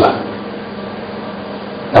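Room tone through a lapel microphone: a steady hum and hiss with a few faint steady tones, between a man's spoken phrases.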